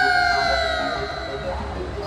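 Intro of a Bollywood film song: a long held sung note slides slowly down in pitch and fades, over a soft repeating backing pattern.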